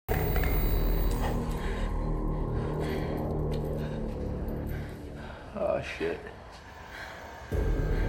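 Low, ominous droning horror-film score. It thins out about five seconds in, when a man mutters "shit", then comes back in suddenly and loud near the end.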